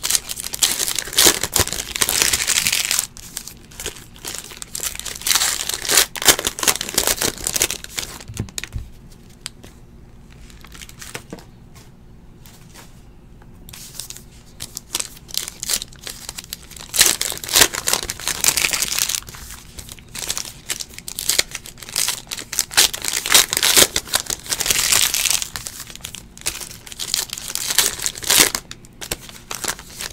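Trading card pack wrappers being torn open and crinkled by hand, in several spells of a few seconds each with quieter pauses between.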